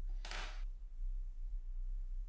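A single short metallic clink with a brief high ring, about a quarter of a second in, as a pair of watchmaker's tweezers is set down. A steady low hum lies underneath.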